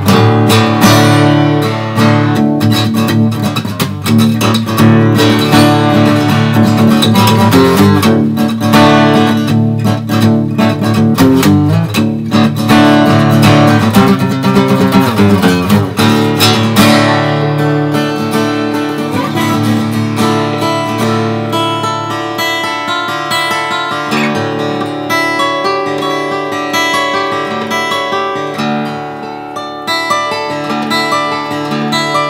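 A handmade Bouchereau acoustic guitar played solo. It is strummed in dense chords for about the first half, then played as separately picked notes and chords, a little softer.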